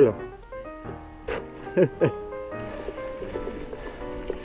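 Background music with steady held notes, with a few short voice sounds about a second and a half in.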